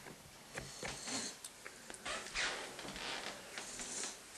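Faint handling noise: soft rustles and a few light clicks as the gas mask and handheld camera are moved about.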